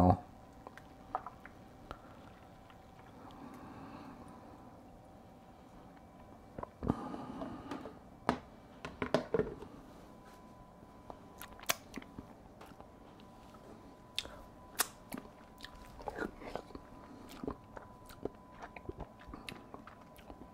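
Quiet handling and mouth sounds: a couple of knocks about seven seconds in as the plastic bucket lid goes on, then scattered lip smacks and mouth clicks of someone tasting fermented hot sauce off a wooden spoon.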